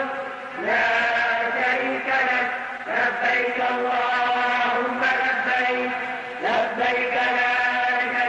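A man's voice chanting a devotional chant in long, held phrases on steady notes, with brief breaks about half a second, three seconds and six and a half seconds in.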